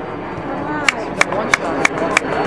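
A steady rhythm of sharp, ringing strikes, about three a second, beginning about a second in, over spectators' voices at a soccer match.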